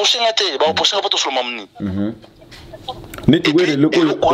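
A man talking, with a short pause a little past halfway before the talk resumes.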